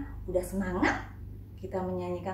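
A woman's voice in short, lively exclamations with sweeping pitch, over a steady low hum.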